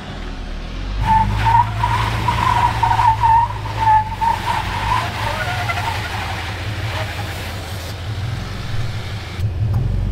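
Stock Jeep Wrangler's engine running under load as it crawls up bare sandstone, with a wavering tyre squeal from about one to five seconds in as the tyres scrub on the rock.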